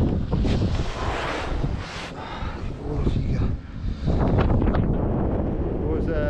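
Wind buffeting the microphone during a snowboard run, with the board sliding and scraping over snow in hissy swishes over the first two or three seconds.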